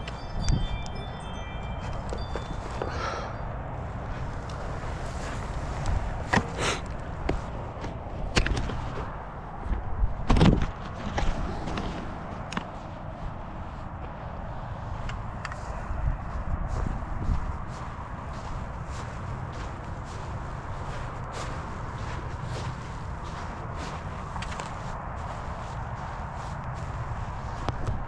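Scattered knocks and rustles from a handheld camera being moved about, with footsteps on grass, over a steady low outdoor background. A few short high chiming tones sound in the first second or two.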